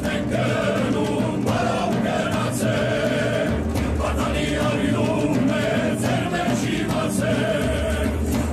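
Music with a choir of voices singing over a steady low beat.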